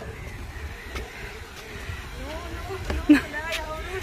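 Low, steady outdoor background noise with faint voices, then a voice saying 'No' near the end.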